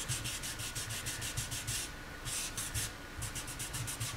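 Quick back-and-forth scrubbing on a quilted maple guitar top, about five strokes a second with two short breaks, working water-based stain down into the pores of the end grain.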